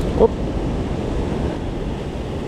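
A steady rush of river rapids with wind noise on the microphone. A short shouted 'whoop' comes about a quarter second in.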